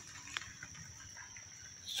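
Steady high-pitched drone of insects such as crickets or cicadas over faint outdoor background noise, with a small click about a third of a second in.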